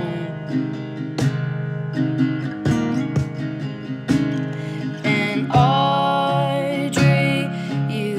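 Acoustic guitar strumming a steady song accompaniment. A sung phrase comes in about five seconds in.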